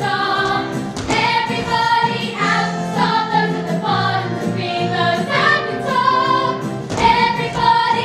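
A chorus of young female voices singing a musical-theatre number together in unison, over instrumental accompaniment with steady low notes.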